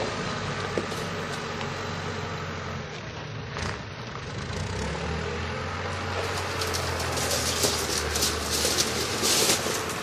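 Backhoe loader's diesel engine running steadily as the machine moves. From about six seconds in, a dense run of clattering and scraping comes in as the loader works into a pile of demolition rubble.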